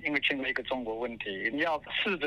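Only speech: a person talking continuously, the voice thin and narrow like a phone or radio line.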